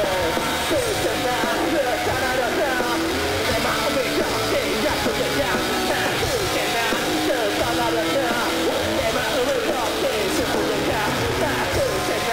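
Live rock band played loud through stage amplifiers, electric guitar and drums, with a man's voice singing and shouting over it into a microphone.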